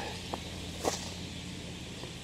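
Two faint footsteps on a gravel and leaf-strewn path, over a faint steady outdoor background with a low hum.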